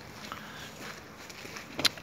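Low steady background noise, with one short sharp click near the end.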